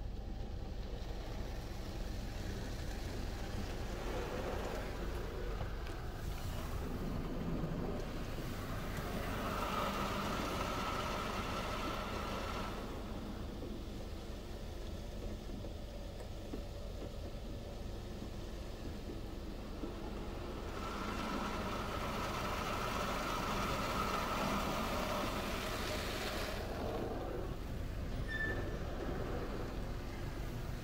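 High-pressure water jets of a Futura SSA automatic car wash striking the car's glass and body, heard from inside the car over a steady low machine hum. The spray grows louder twice as it sweeps over, about ten seconds in and again a little past twenty seconds.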